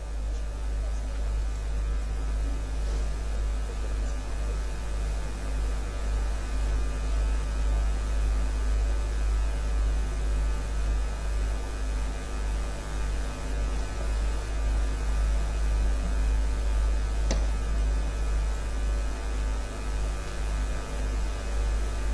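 Steady, low electrical mains hum in the sound system's audio feed, with fainter higher hum tones above it. A single faint click comes about two-thirds of the way through.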